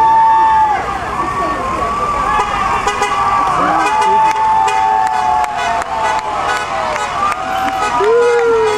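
Vehicle horns blowing long, steady blasts, one ending about a second in and another about halfway through that sags slightly in pitch, as a line of school buses drives past. Voices shout over them, and a run of sharp clicks comes through the middle.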